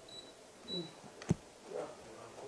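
A quiet pause in room tone, broken by one sharp, short click about a second and a half in, with faint murmurs or breaths before and after it.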